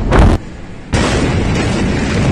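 Large explosion recorded on a phone: a loud short burst at the start, then about a second in a sudden, sustained rush of noise as the blast reaches the microphone.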